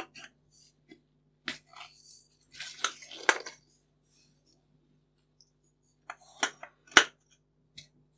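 A carbon fibre shroud tube sliding over an air rifle's steel barrel, and the rifle being handled: scattered light clicks, knocks and scrapes, the loudest a sharp knock about seven seconds in.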